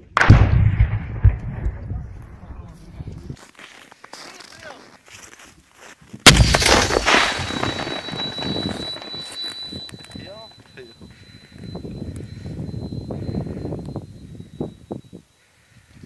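Two shots from an anti-tank grenade launcher about six seconds apart, each a sudden loud blast with a long rolling echo dying away over several seconds. A thin steady high tone lingers for several seconds after the second.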